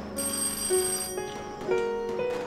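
An old-style desk telephone ringing, one short ring about a second long, over soft background music.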